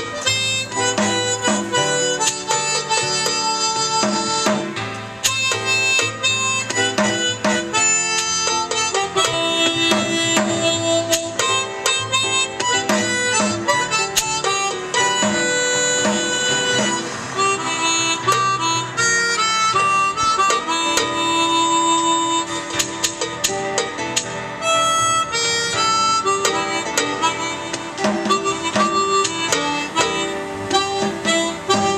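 Suzuki SC64 chromatic harmonica played through a handheld microphone, carrying a slow melody in long held notes. A steady hand-percussion beat runs underneath.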